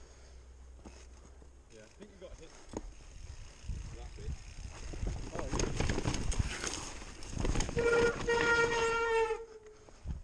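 Mountain bike setting off down a rough dirt trail: a rattle of tyres and frame over the ground that builds a few seconds in. Near the end comes a held high-pitched tone of about a second and a half that dips as it ends.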